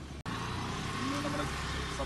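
Outdoor background noise with a steady low hum. It drops out abruptly about a quarter second in at an edit, then comes back louder, and a person's voice begins speaking about a second in.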